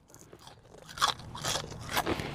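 Mouth biting and chewing a crunchy curly fry close to the microphone: a few short crunches starting about a second in.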